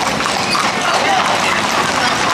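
Hooves of several cob horses clip-clopping on a tarmac road as they pull two-wheeled carts past, mixed with people talking.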